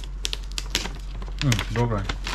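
Gift-wrapping paper crackling and rustling in quick small clicks as it is peeled back from a box; a voice says a short "oh" near the end.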